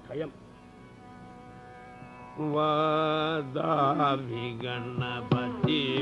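Carnatic classical concert music in raga Hamsadhwani. A soft, steady drone with a single drum stroke comes first. About two and a half seconds in, a loud melodic line enters on a long held note, then moves into wavering, ornamented phrases, with mridangam strokes near the end.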